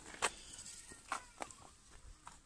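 Footsteps scuffing on a gravel-strewn asphalt path: a few short, uneven scrapes, faint against a thin steady high whine.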